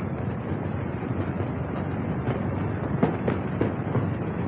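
Steady hiss and crackle of an early sound-film soundtrack, with irregular clicks about every half second.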